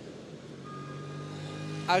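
A motor vehicle's engine on the road, a steady-pitched hum growing gradually louder as it approaches, over street noise.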